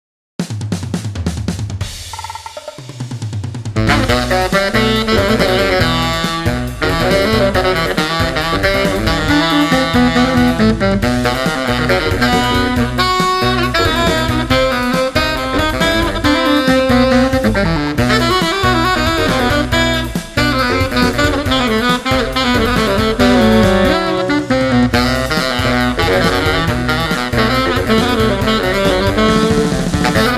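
Layered baritone saxophones (a 1958 Selmer Mark VI) play a prog-rock guitar solo arranged for sax, with the bass and synth parts also played on bari sax, over a rock drum kit. A quieter opening gives way to the full arrangement about four seconds in.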